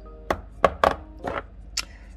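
Plastic spice tubs and jars knocking and clicking against each other and the shelf as they are picked up and set down, about five short knocks.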